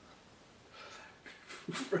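A man's breathy laughter: a short quiet moment, then a few puffs of breath, turning into a voiced laugh near the end.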